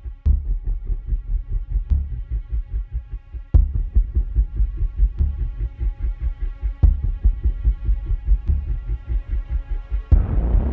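Intro soundtrack for the film's opening logos: a low throbbing pulse under a sustained synthesized drone, with a sharp hit about every second and a half.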